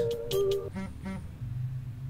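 Background music, with a short, faint buzz from a Bosch laser measure's haptic vibration motor, about a second in, as it locks on and takes a measurement.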